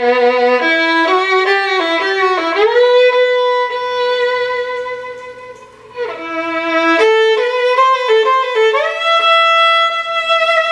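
Violin playing a slow, mournful melody: short stepping notes that slide up into a long held note about two and a half seconds in, a fade, then a new phrase from about six seconds that again slides up into a held note near the end.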